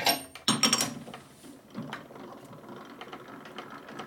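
Metal clinks of a chuck key against a lathe chuck in the first second, then a rattling, ratchet-like turning as the chuck's jaws are run in to clamp a skateboard wheel.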